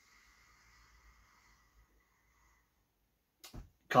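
A person sniffing a glass of dark ale: one long, faint inhale through the nose that fades out about two and a half seconds in. A short mouth sound comes near the end, just before speech starts.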